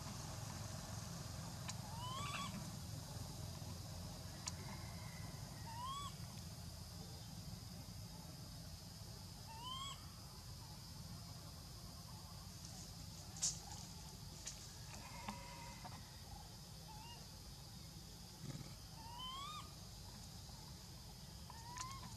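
A baby macaque giving short, rising cries, about five of them a few seconds apart, over a steady high insect hum. A single sharp click sounds about halfway through.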